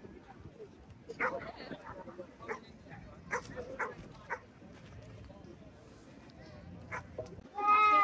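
Faint outdoor chatter and scattered small knocks, then near the end a sudden loud, high-pitched call from a young child, its pitch falling.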